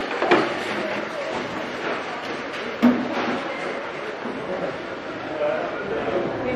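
Indistinct voices in a large store, with two sharp knocks from storage boxes being picked up and set down, one just after the start and a louder one near three seconds in.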